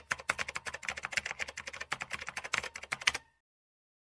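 Typing sound effect: a rapid run of key clicks that stops suddenly a little past three seconds in.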